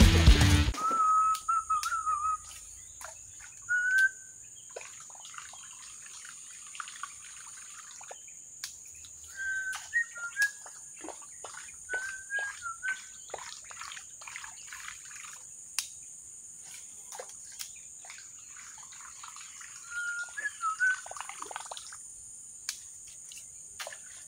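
Swamp-forest ambience: birds give short whistled calls every few seconds over a steady high insect buzz. Irregular runs of short sharp clicks come in between the calls.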